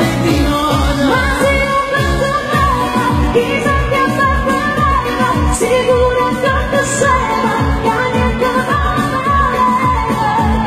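A woman singing a Neapolitan neomelodic love song live, with vibrato, over an amplified band backing with a steady kick-drum beat of about two beats a second.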